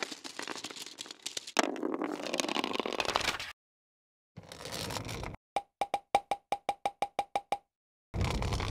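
Cartoon sound effects: a few seconds of noisy swishing, then about a dozen quick pitched plops in rapid succession, one for each paint pot popping into place.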